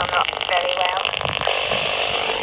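A voice received over AM CB comes out of a Realistic TRC-214 handheld's small speaker. It sounds thin and narrow, under steady static hiss, and stops about a second in, leaving the static alone. The operator puts the static down to interference from nearby power lines.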